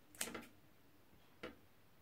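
Faint clicks of a metal fork being handled over a plate: a short cluster of clicks near the start and a single click about a second and a half in.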